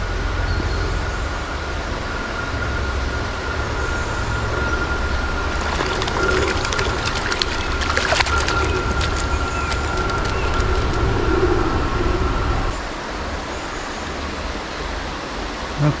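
A hooked small brown trout splashing and thrashing at the water's surface, a quick string of sharp splashes between about six and ten seconds in. Under it runs a steady low rumble with a thin steady whine, and both drop away about three seconds before the end.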